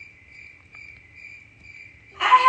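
Cricket-like chirping: a steady, high trill that pulses a few times a second.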